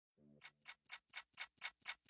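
Clock ticking, seven even ticks at about four a second starting just under half a second in: the ticking-clock intro of a pop song playing as background music.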